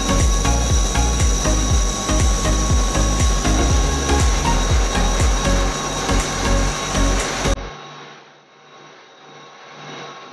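Clog-carving copying machine cutting a wooden shoe out of a block of wood: a loud, rough, uneven grinding and rasping with a low pulsing beneath. It cuts off abruptly about three-quarters of the way through, leaving only a low hum.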